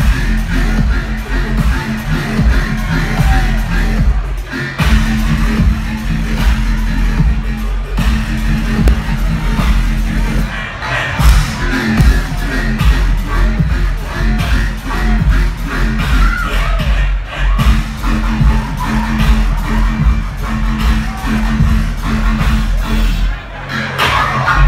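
Loud riddim dubstep played live through a club sound system, with heavy sub-bass and a repeating bass figure.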